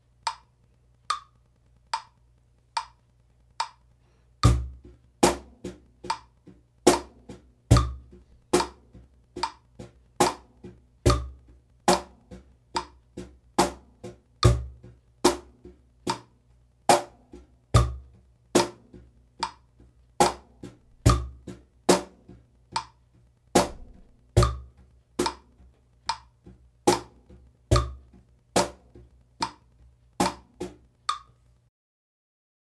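Cajon played with bare hands over a metronome clicking at 72 beats a minute. For the first four seconds or so only the clicks sound; then an eighth-note groove begins, with a deep bass stroke on the first beat of each bar and higher tone strokes on every eighth note.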